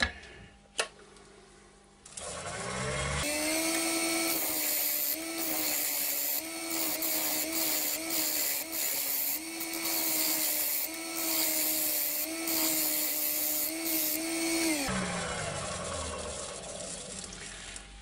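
Wood lathe spinning up about two seconds in, then a spindle gouge held on its side as a scraper shaving the outside of a spinning oak platter blank: a steady motor whine under the hiss of the cut, with short breaks where the tool lifts off. The lathe winds down a few seconds before the end.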